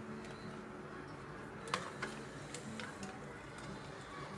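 A few faint clicks from a snap-off utility knife and a plastic tray being handled on a hard tabletop, two of them close together about two seconds in, over a faint steady hum.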